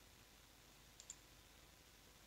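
Near silence with a quick double click of a computer mouse button about a second in.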